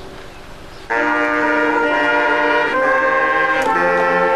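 A marching band's brass instruments come in together about a second in with loud, held chords, after a much quieter start. The chord changes twice as the notes are sustained.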